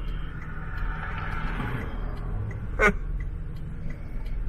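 Steady low engine and road noise inside a car's cabin while driving, with one short, sharp sound a little under three seconds in.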